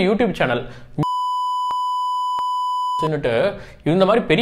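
Censor bleep: a steady, pure electronic beep about two seconds long, cut in over the speech so that nothing else is heard beneath it, with two faint clicks inside it. Talking runs up to it and picks up again right after.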